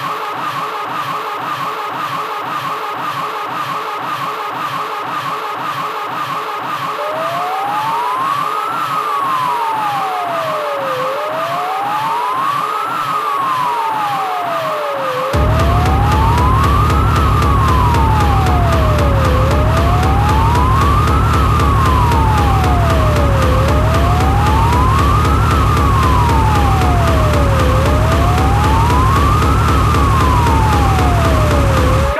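Electronic dance track with a fast pulsing beat and a siren-like synth tone that rises and falls about every four seconds. About halfway through, a heavy bass drum comes in suddenly and the track gets louder.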